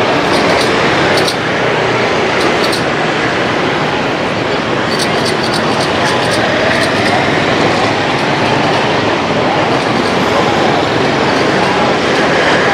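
Steady street traffic: motorbike engines running and passing on a busy city street.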